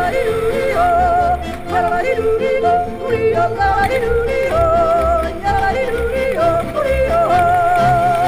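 Yodeling song with instrumental backing: a voice leaping back and forth between a low and a high pitch over a pulsing bass accompaniment.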